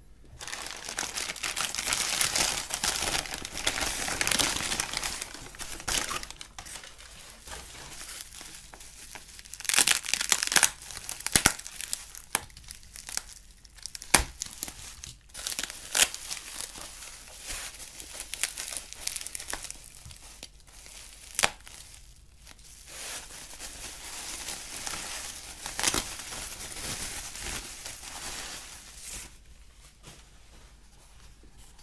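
Newspaper wrapping and plastic bubble wrap being torn open and unwrapped by hand: continuous crinkling and rustling, with a few sharp cracks along the way.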